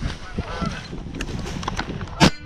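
Flock of geese honking as they fly overhead, short repeated calls over a low rumble, with a few sharp clicks.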